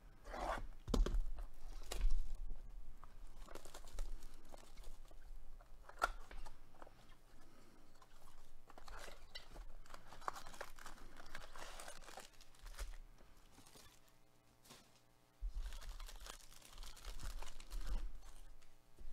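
Clear plastic shrink-wrap being torn and crinkled off a trading-card hobby box, with foil packs and card stock handled, in irregular crackling bursts.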